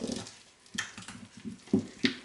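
A spoon working thick yeast batter with mashed banana in a glass bowl: a string of short, irregular wet strokes and scrapes as the batter is worked.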